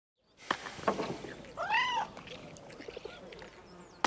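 A cat meows once, a short call that rises and falls in pitch, after a couple of soft clicks.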